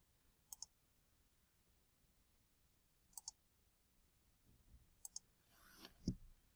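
Faint computer mouse clicks: three quick double-clicks spread through a near-silent stretch, with a soft rustle just before the end.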